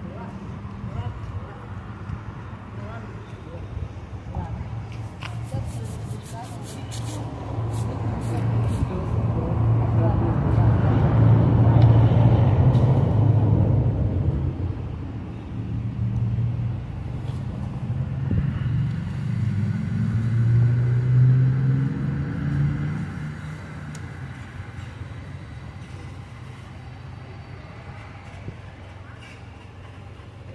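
Road traffic: a motor vehicle passes with a deep engine sound, swelling to its loudest about midway and fading again. A few seconds later a second engine is heard rising in pitch as it speeds up.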